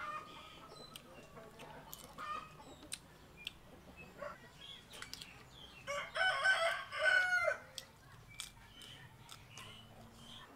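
A rooster crowing once, a pitched call of nearly two seconds starting about six seconds in, the loudest sound here. Small scattered clicks around it.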